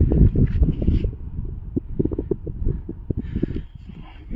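Wind buffeting a hand-held phone's microphone, a gusty low rumble with short knocks of handling noise, loudest in the first second and easing off toward the end.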